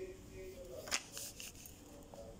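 Folded paper being handled and pressed flat against a tile floor by hand: one sharp crackle a little under a second in, then a few faint rustles.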